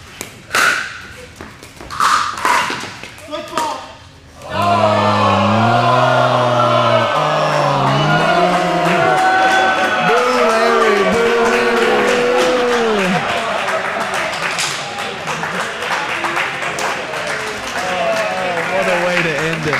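A few sharp pops of pickleball paddles striking the ball, with short shouts. About four and a half seconds in, loud music starts suddenly and plays on over crowd noise.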